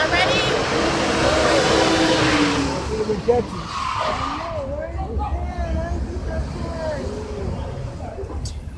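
Street traffic: a vehicle passes with a loud rushing noise that fades out about three seconds in. A short knock follows. Then people's voices carry over the low rumble of traffic.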